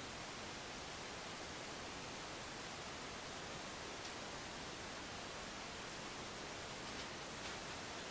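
Steady faint hiss of background room tone, with no distinct sound standing out.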